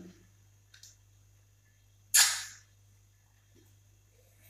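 A child's single short, sharp mouth noise as she tastes a piece of lime, about two seconds in, dying away within half a second. A faint tick comes before it.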